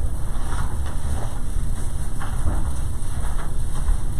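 A steady low rumble of background room noise with a few faint, brief rustles and no speech.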